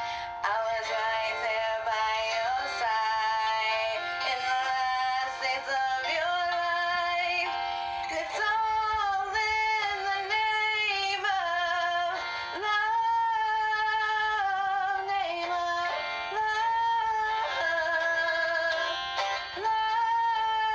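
Music: a woman singing a song with instrumental accompaniment, holding long notes that slide between pitches.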